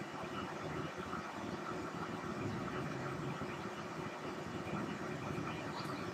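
Steady, quiet background noise with a faint hum and no distinct events: the room tone of the recording.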